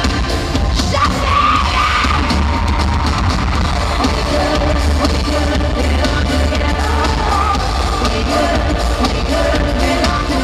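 Live pop concert in an arena, recorded from the audience: loud amplified music with heavy bass and singing over it.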